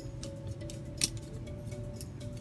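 Plastic parts of a transformable robot action figure, the SwiftTransform Breakdown, clicking as they are folded by hand, with one sharp click about a second in, over background music.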